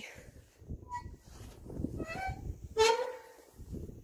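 A playground swing squeaking as it swings back and forth: a few short, high squeaks, the loudest just before three seconds in, over a low rumble.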